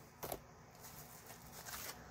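Faint handling of paperboard pocket folders: a short rustle or tap about a quarter second in, then light rustling near the end over quiet room noise.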